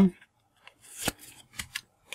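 A stack of paper football stickers being flicked through by hand: a few short sliding rustles and snaps as the top sticker is moved to the back, the sharpest just after a second in.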